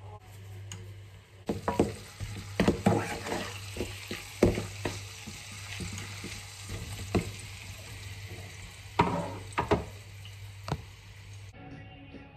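Food sizzling in a frying pan as it is stirred, with a utensil knocking against the pan several times. The sizzle starts about a second and a half in and cuts off shortly before the end, over a steady low hum.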